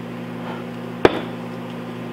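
A single sharp clack about a second in, as the metal injection mold for soft plastic worms is pulled apart and set down on the wooden bench, over a steady electrical hum from an appliance running in the shop.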